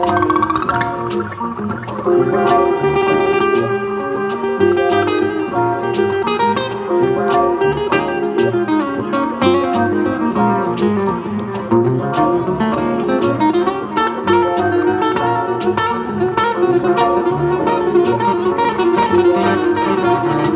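Acoustic guitar played live as an instrumental, with picked single notes and chords.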